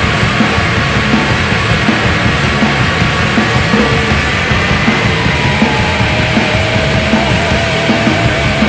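Loud noise-rock music with distorted guitars over steady drum hits, and a wavering held guitar note in the last few seconds.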